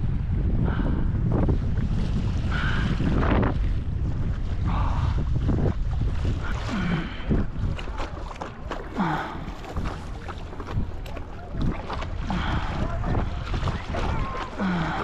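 Wind buffeting the microphone, heaviest in the first half, with stand-up paddleboard paddle strokes dipping and splashing in the lake water about every two seconds.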